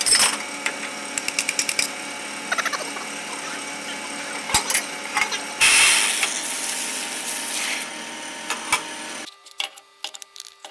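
Vertical bandsaw running, with scattered ticks, then cutting into a block of cast brass stock for about two seconds, about halfway through. The running sound drops away suddenly near the end.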